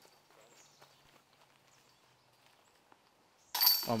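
Near silence: faint outdoor ambience among trees with a faint low steady hum, until a man's voice cuts in with a sudden loud "Oh" near the end.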